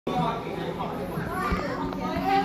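Children's voices chattering and calling, over a steady low hum.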